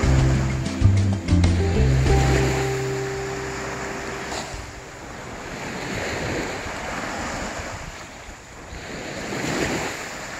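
Background music fading out over the first few seconds, leaving ocean surf: small waves breaking and washing up a sandy beach, swelling twice in the second half.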